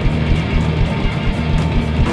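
Rock band playing live: electric guitar over a drum kit, with a steady kick-drum beat.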